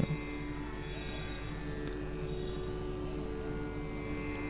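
Soft background music of steady held notes, like a sustained drone chord, over a low electrical hum.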